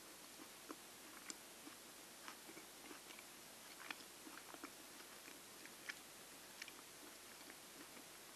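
A person chewing a pan-fried dumpling close to the microphone: faint, irregular little mouth clicks and smacks, several a second at times.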